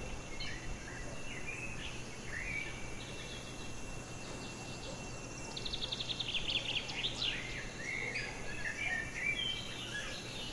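Several songbirds chirping and whistling, with a rapid trill about six seconds in, over a steady high-pitched tone and a faint background hiss.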